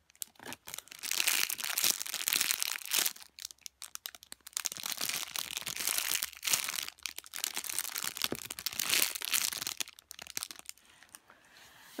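Clear plastic packaging bag crinkling in several long bursts as a soft foam squishy toy is squeezed through it by hand. The crinkling fades near the end.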